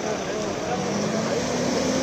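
A car pulling away and driving off, with a steady low engine hum, over the chatter of voices nearby.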